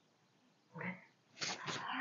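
A woman's short wordless vocal sound about a second in, then a breathy sigh near the end.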